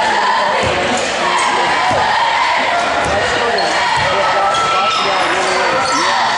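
Basketball being dribbled on a hardwood gym floor, a bounce about every half second, under the chatter of spectators echoing in a gym.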